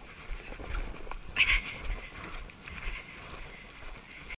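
A horse's hooves thudding on turf as it is ridden across a grass field, heard from the rider's head-mounted camera, with a steady hiss behind them. A short, loud rush of noise comes about a second and a half in.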